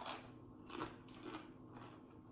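Close-up chewing of a crunchy tortilla chip: a sharp crunch at the start, then a few fainter crunches about half a second apart.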